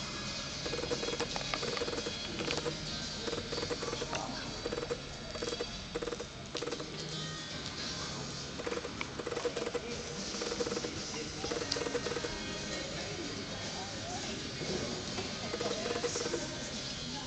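Music playing with a mid-pitched note repeating about twice a second, under a steady wash of background noise and scattered short clicks.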